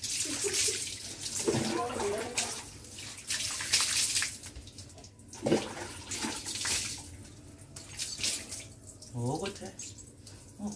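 Water poured from a plastic mug over a wet dog's back and splashing onto the concrete floor, in several separate pours.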